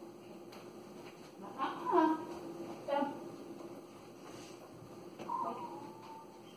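Three short high-pitched vocal sounds, about two, three and five seconds in, with pitch sliding down, over a faint steady hum.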